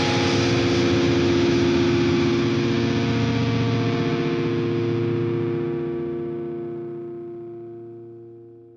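The final chord of a progressive metalcore song left ringing on a distorted, effects-laden electric guitar after the band stops. It holds steady, then fades out slowly over the last few seconds.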